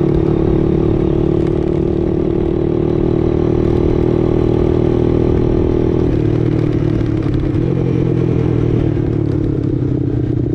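Engine of a Big Red ATV running steadily at cruising speed on a gravel road, its pitch dropping a little about six seconds in as the throttle eases.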